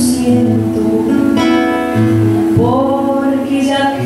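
A woman singing a Cuyo folk song into a microphone over acoustic guitar accompaniment, holding long notes, with one note sliding upward about two-thirds of the way through.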